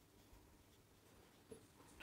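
Near silence, with the faint sound of a marker writing words on a whiteboard.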